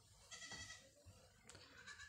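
Near silence, with a faint, high-pitched animal call in the background lasting about half a second.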